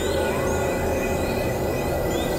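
Experimental electronic synthesizer music: a dense, noisy drone with a low hum, several steady held tones and thin whistling tones gliding up and down in pitch, at an even level.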